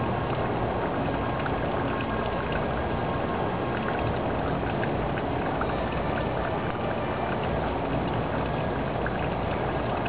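Steady outdoor background noise: an even rumble and hiss that holds constant, with no distinct events.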